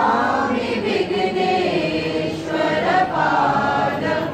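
A mixed group of men and women singing a Sanskrit Hindu devotional prayer together, voices held in long continuous phrases with no instruments.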